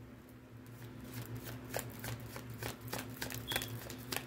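Tarot deck being shuffled by hand: a run of quick, irregular soft card clicks that grows busier after about a second, over a low steady hum.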